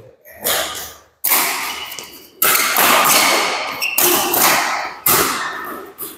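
Badminton rally: rackets striking a shuttlecock about five times, roughly once a second. Each sharp hit rings on and fades in the echo of the hall.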